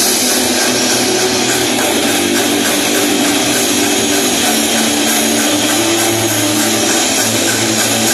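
Rock band playing an instrumental passage live: distorted electric guitar and electric bass over a Tama drum kit, loud and steady, with no vocals.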